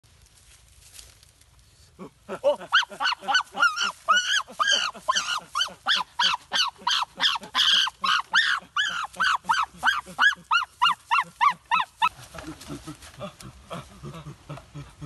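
An animal calling in a fast, loud run of high rising-and-falling calls, about three or four a second, starting about two seconds in and stopping suddenly about ten seconds later. Lower, quieter voices follow near the end.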